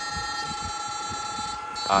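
A 16-FET battery electrofishing inverter running, giving off a steady, high buzzing whine made of several held pitches. This is the sound of its pulsed shocking output; the speaker judges the setting by ear.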